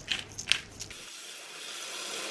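A few short crunching clicks of a pepper grinder, then, about a second in, tap water running steadily into a pot of ingredients, slowly growing louder.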